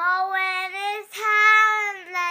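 A young girl singing unaccompanied, holding two long notes with a short break about halfway.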